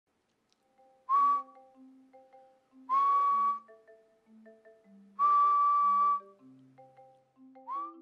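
A person whistling single steady notes at about 1 kHz, each scooping up briefly at its start: three held whistles, the first short, the second longer and the third about a second long, then a brief rising whistle near the end. Soft mallet-percussion background music plays underneath.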